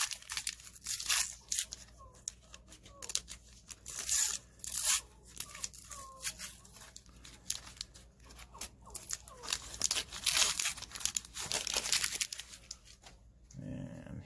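Wax-paper wrapper of a 1990 Donruss baseball card pack being torn open and crumpled by hand: a run of irregular crackling tears that eases off near the end.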